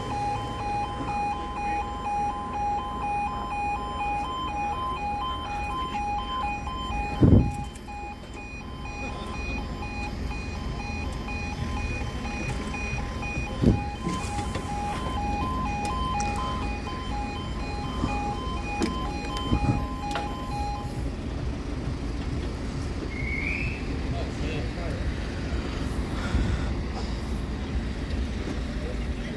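Railway level crossing audible warning alarm sounding in an even pulsing two-tone pattern as the crossing sequence starts and the barriers come down, stopping about 21 seconds in. Two sharp thumps are heard, about 7 and 14 seconds in.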